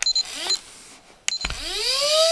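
Small electric winch motor on a 1/10 RC crawler paying out line: a brief whir about half a second in, then about one and a half seconds in a whine that rises in pitch as the motor spins up and settles into a steady tone. Clicks and a couple of short high beeps come before it.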